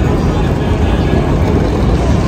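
Loud, steady outdoor noise of a busy station plaza, with passers-by's voices in it.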